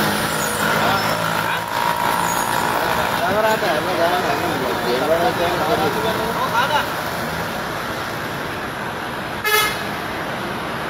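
Lorry tyre being let down, air hissing steadily out of the valve. Voices come in partway through, and a short horn beep sounds near the end.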